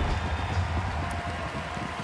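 A broadcast replay-transition effect: a deep rumbling whoosh that fades over the first second and a half, over a steady noisy bed of arena crowd sound.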